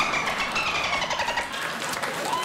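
A man imitating a dolphin with his voice: one long, high-pitched, raspy squeal that slowly falls in pitch.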